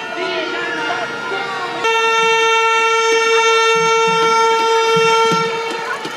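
A horn blown in a crowd: one long, steady, loud blast starting about two seconds in and lasting about three and a half seconds, over crowd voices.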